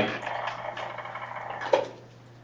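Room tone in a pause between words: a steady low hum under a faint hiss, with one brief soft sound near the end.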